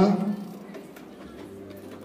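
A man's voice trailing off at the very start, then low, steady background noise with no distinct sound in it.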